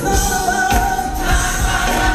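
Gospel choir singing, holding a long note over instrumental accompaniment with a steady low beat.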